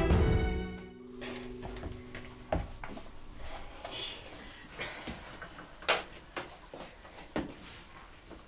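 Background music fading out in the first second or two, then scattered light clatters and knocks of kitchen baking work, dishes and a metal baking tray being handled, the sharpest about six seconds in.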